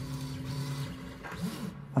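A desktop 3D printer running, its motors giving a steady hum that fades out a little past halfway.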